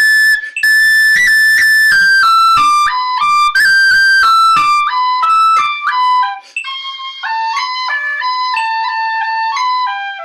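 Tin whistle playing a tune in quick runs of separate notes. The higher notes in the first part are louder, and the lower notes from about six seconds in are softer.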